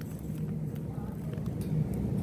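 Steady low hum of supermarket background noise around an open freezer case, with a faint distant voice about a second in.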